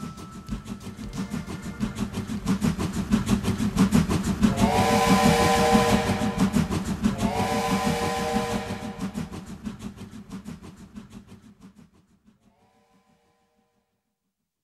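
Steam locomotive chuffing in a fast, even rhythm, with two long, chord-like whistle blasts in the middle and a fainter third near the end, the whole fading out to silence.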